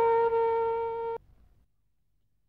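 Title music ending on one long held flute note that softens slightly and then cuts off abruptly just over a second in, leaving near silence.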